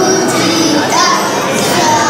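A group of young girls singing a Carnatic song together in unison, their voices gliding between notes.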